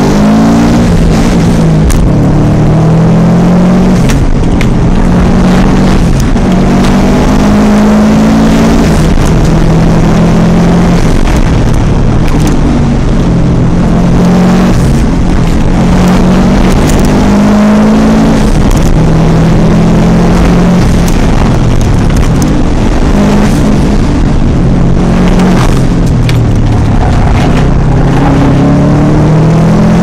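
Engine of a historic hillclimb car heard from inside the cabin under hard acceleration, very loud, its pitch climbing and dropping again and again as it revs up through the gears and shifts on the climb.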